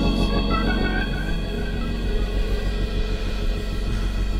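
Slow soul-blues band playing between sung lines: a Hammond organ holds sustained chords over a steady drum pulse, with electric guitar, and a short run of higher notes about a second in.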